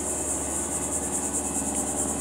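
Insect chorus: a steady, high, evenly pulsing buzz, with a faint low hum beneath it.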